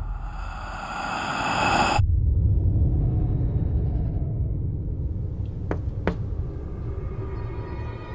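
Horror trailer sound design: a swelling, brightening riser that cuts off abruptly about two seconds in, giving way to a low rumbling drone that slowly fades. Two quick sharp ticks come a little after the six-second mark.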